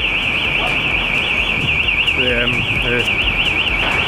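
Electronic alarm sounding a continuous high-pitched warble that wobbles up and down about six times a second, steady throughout.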